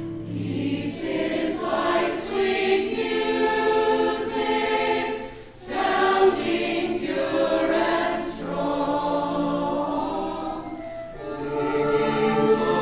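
Mixed choir of men's and women's voices singing a hymn, in phrases with a brief breath break about five and a half seconds in and another near the end.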